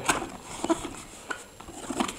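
A few light clicks and rubbing sounds, spread about half a second apart, of a cardboard product box being handled and opened.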